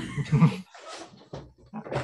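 A man laughing briefly: a loud burst of laughs in the first half-second, trailing off into a few quieter breathy bits.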